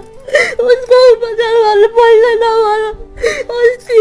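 A woman crying, wailing in a drawn-out, wavering voice, broken twice by gasping, sobbing breaths: once about half a second in and again near the end.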